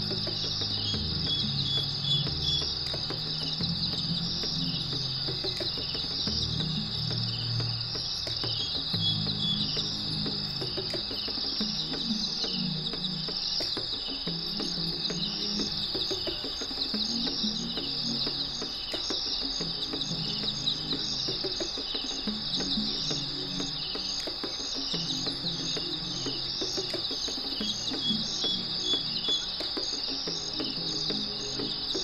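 A steady, high insect chorus with a fine pulsing trill, over soft background music of slow sustained chords.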